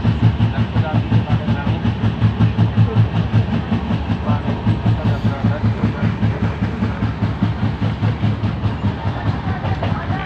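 Passenger train running at speed, heard from aboard: a steady low rumble of wheels on rails with a fast, even pulsing beat.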